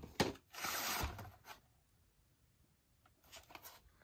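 A VHS tape being handled and slid partly out of its cardboard slipcover sleeve. There are a couple of sharp knocks as it is picked up, then about a second of rustling scrape, and a few faint clicks near the end.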